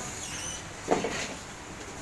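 Assembly-room background noise with a faint high steady tone, broken about a second in by a single sharp knock or clatter, like a part or tool being set down on the bench.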